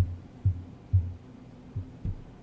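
Four low, dull thumps, irregularly spaced, the last one weaker.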